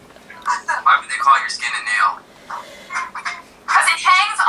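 Speech only: people talking over a group video call, heard through the call's audio.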